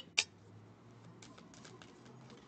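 Tarot cards being shuffled by hand: faint, quick papery clicks of cards slipping over one another, starting about half a second in.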